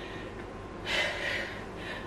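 A woman's short, audible breath about a second in, breathy and without voice, fading quickly.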